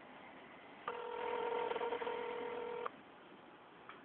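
Telephone ringback tone heard down the phone line while the call waits to be answered: one steady ring about two seconds long, starting about a second in.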